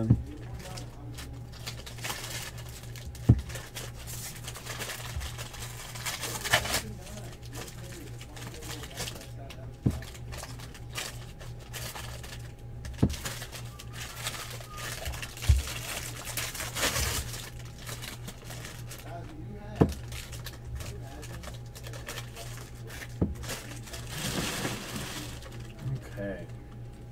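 Trading cards being handled and sorted by hand: papery rustling as cards are flipped and dealt, with a sharp tap every few seconds as cards or stacks are set down or squared on the table, over a steady low hum.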